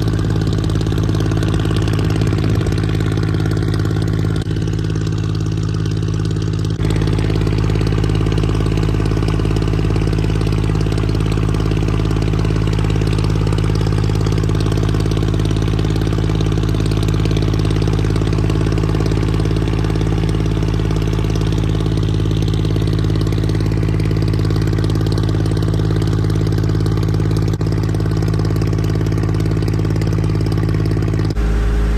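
Water taxi's engine running steadily while the boat is underway: a loud, even, low hum with a hiss of water and air above it. The low hum shifts slightly about seven seconds in.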